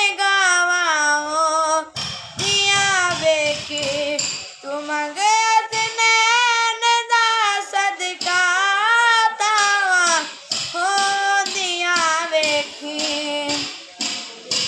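A boy singing a Punjabi song solo and unaccompanied, in long held phrases with ornamented, wavering turns and short breaks between lines.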